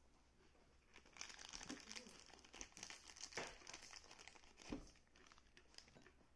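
Faint crinkling and tearing of a plastic food wrapper being handled and opened, a dense run of fine crackles from about a second in until about five seconds. A single short knock near the end.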